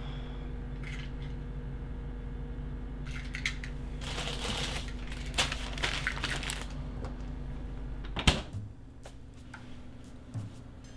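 Refrigerator humming steadily. Through the middle, a paper or plastic wrapper rustles and crinkles for a couple of seconds as food is handled. Near the end comes one sharp thump, after which the hum stops.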